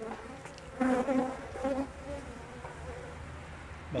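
Honeybees buzzing in a steady drone from an opened hive, swelling louder for a moment about a second in.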